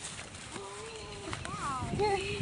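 A person's wordless voice: a held moan lasting about a second, then a short high sound that falls in pitch near the end.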